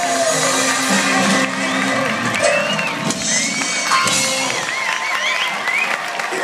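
Live band sounding the last held notes of a song, fading over the first few seconds, while the arena crowd cheers and whoops.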